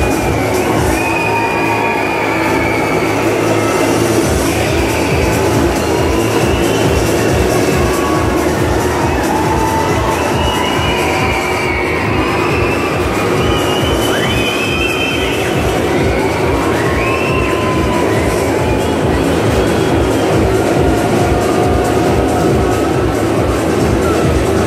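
Motorcycle engines running inside a steel-mesh globe of death, their pitch rising and falling as the riders circle, over loud music.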